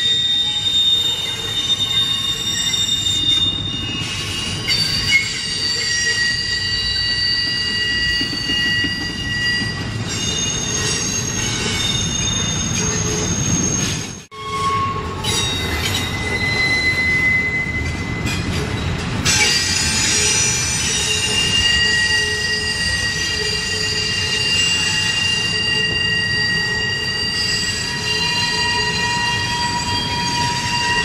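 Double-stack intermodal freight cars' wheels squealing against the rail as the train rounds a tight 45-degree curve: several steady high-pitched squeals that shift and overlap, over the low rumble of wheels on track. The sound drops out sharply for a moment about halfway through.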